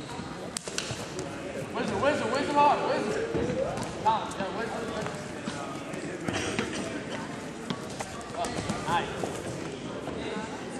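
Voices of people shouting and calling out around a wrestling mat, with scattered short thumps.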